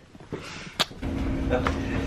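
A single sharp click, then from about a second in a steady low hum of basement room noise, with two light ping-pong ball taps close together.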